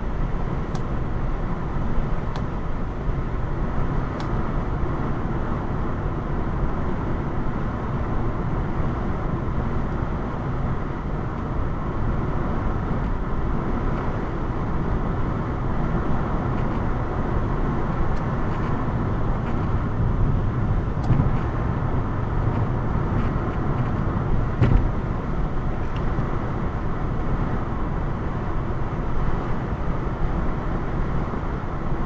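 Steady road noise inside a car cruising at about 65 mph: tyres on the highway and the engine running under a constant drone, with a few faint light clicks.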